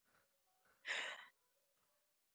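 A single short breathy exhale, like a sigh, about a second in, over near silence.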